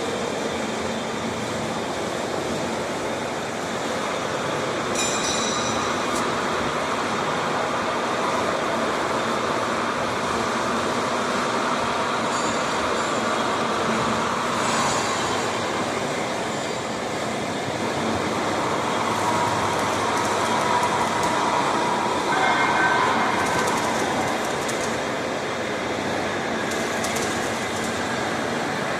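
Steady machinery running noise in a factory hall that builds metal-sheet roll forming machines, with a few brief sharper sounds on top.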